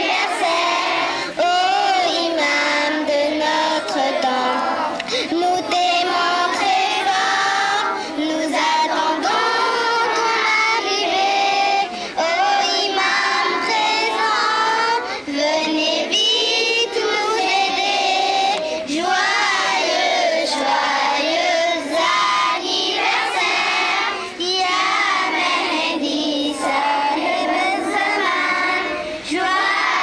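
A group of children singing together in chorus without a break, their voices loud and wavering in pitch.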